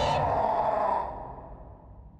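A drawn-out vocal sound from an animated character's voice, trailing off about a second in, then quiet.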